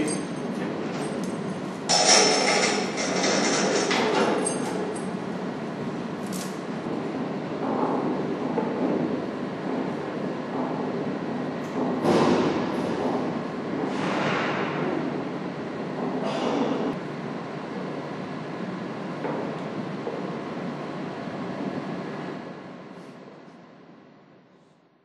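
Steady mechanical rumble of the hoist lifting the telescope mirror in its cell, with a few clanks and scrapes about two and twelve seconds in. It fades out near the end.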